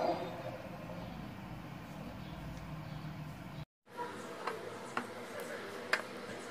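Steady low background rumble; after a brief break in the sound, a few light clicks and taps of a clear plastic food container and its lid being handled.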